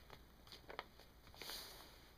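Faint rustling and soft crackle of a sheet of paper being creased and smoothed flat by hand, with a few light ticks and one brief rustle about one and a half seconds in.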